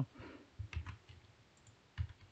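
A few soft, short clicks in a quiet pause, two of them close together a little under a second in.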